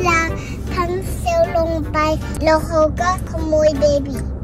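A young girl talking in a high, sing-song voice, with long drawn-out syllables. A steady low car-cabin rumble runs underneath.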